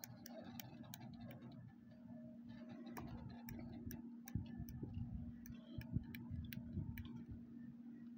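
Plastic toy water-gun triggers clicking irregularly, a few sharp clicks a second, faint, over a low rumble and a steady hum.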